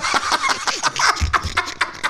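Two men laughing hard in rapid bursts, with a couple of dull thumps about a second in.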